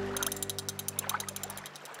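Cartoon sound effect of rapid ratchet-like clicking, many clicks a second and fading away over about a second and a half, for a spider scuttling off; a held music chord dies away under it.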